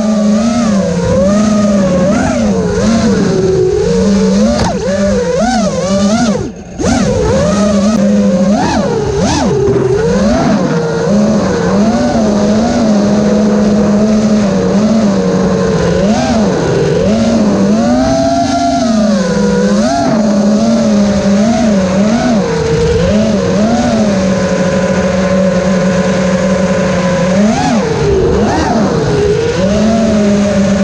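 FPV drone's brushless motors and propellers whining, the pitch constantly swooping up and down with the throttle, heard through the drone's own onboard camera. About six and a half seconds in, the sound dips sharply for a moment.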